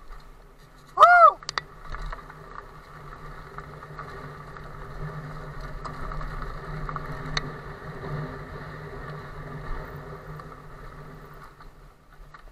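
Riding noise from a mountain bike on a dirt forest track: a steady rolling, rattling hum throughout. About a second in there is one short, loud squeal that rises and falls in pitch.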